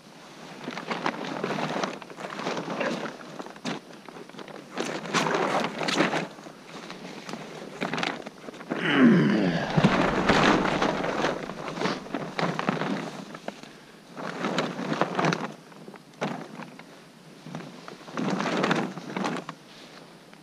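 Dry leaf litter crunching and rustling in irregular bursts as someone moves about on the forest floor, with a louder bump and scrape against the camera about nine seconds in.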